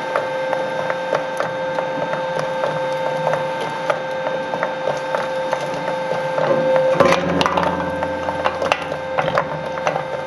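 Industrial shredder running with a steady hum, its steel cutter discs knocking and scraping against used oil filters. A louder burst of crunching about seven seconds in as the filter casings are bitten.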